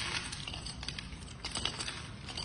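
A cat and a duck eating dry kibble from one bowl: rapid, irregular crunching and clicking as the duck's bill pecks and rattles the pellets and the cat chews.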